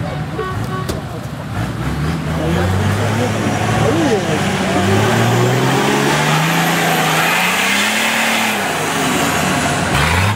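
Lifted off-road 4x4's engine revving under load as it claws up a steep muddy bank on mud tyres. The engine note climbs steadily for several seconds, then drops near the end.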